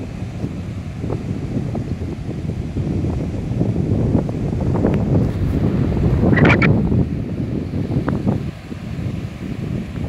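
Wind buffeting the microphone over the wash of small breaking surf, with a brief sharper sound about six and a half seconds in.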